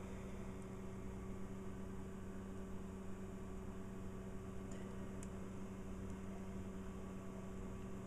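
Steady hum of a desktop computer running its CPU at full load, with a low steady tone and its overtone over faint fan noise. Two faint ticks come about halfway through.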